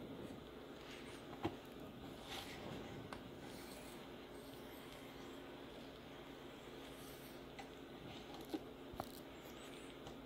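Faint, light-pressure strokes of a diamond sharpening stone in a stone holder along a knife edge, taking off the burr at the end of sharpening. A few small sharp clicks come through, about five in all.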